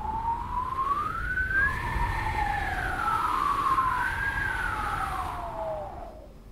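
Howling wind sound effect: two whistling tones rise and fall slowly over a low rumble, fading out near the end.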